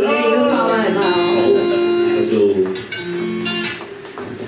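Electric guitar played through an amplifier: a few notes picked and left ringing, with new notes near the end. A voice is heard briefly at the start.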